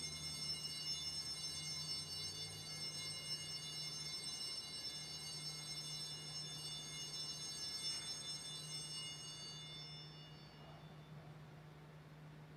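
A struck bell ringing from a single stroke and slowly dying away over about ten seconds, rung for the elevation of the chalice at Mass. A low steady hum sits underneath.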